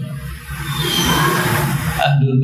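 A man's breath rushing into a handheld microphone held at his mouth: a hiss with low rumble that builds over the second half and stops abruptly when he starts speaking again.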